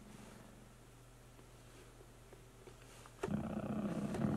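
Near silence with a faint low hum, then about three seconds in a low, steady synthesizer note starts: a Modal Skulpt synth played over MIDI from the pads of an MPC.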